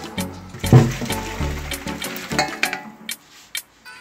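Hot water being poured out of a frying pan into a sink, a splashing pour under background music with a steady beat.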